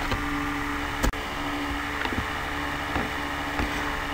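Steady background hum and hiss, with a single short click about a second in.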